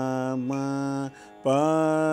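A singing voice holding long, steady notes of Carnatic swaras in the first sarali varisai exercise, changing note once, then a short break past the middle before it slides up into the next held note.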